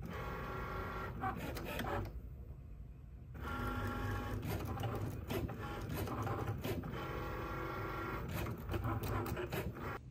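Cricut Maker cutting machine running a cut: its carriage and roller motors whine in several steady tones. About two seconds in they stop for just over a second, then start again, with small clicks.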